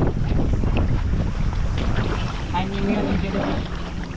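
Wind buffeting the camera microphone, a loud irregular low rumble mixed with water and boat noise, with faint voices about two and a half seconds in.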